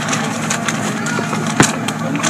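Paper crinkling and rustling as a folded note is handled and unwrapped, with one sharp click about one and a half seconds in, over a steady low hum.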